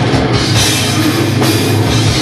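Death metal band playing live, loud and unbroken: distorted electric guitar over a drum kit with cymbals.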